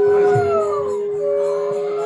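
Several conch shells (shankha) blown in long held notes at different pitches at once. One note slides down in pitch over about the first second while the lowest note holds steady.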